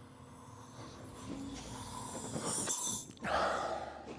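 Nitrous oxide canister hissing as gas is released, building over about three seconds, then a shorter, breathier hiss after a brief break.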